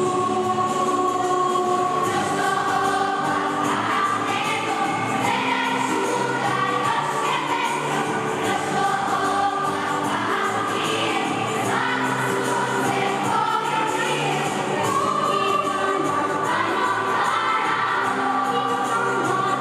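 A children's choir singing a song, with sustained notes and no pauses.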